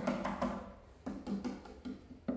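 Several knocks on the plywood cabinet of a Borneo BSP-215 passive speaker as it is handled. They are loudest in the first half second, with fainter ones after.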